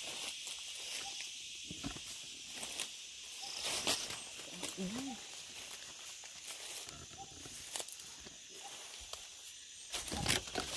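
Footsteps crunching through dry leaf litter and brushing against forest undergrowth, in irregular rustles. Under them runs a steady high-pitched insect chorus.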